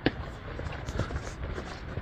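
Footsteps on block paving, a few short knocks about half a second apart, over a steady low rumble.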